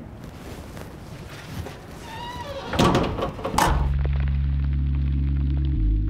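Faint background ambience, then a loud thud about three seconds in, after which background music sets in with a deep sustained bass note that shifts pitch just before the end.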